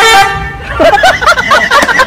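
A loud, horn-like toot sound effect at the start, followed by a burst of rapid, warbling, voice-like squeaks and clicks.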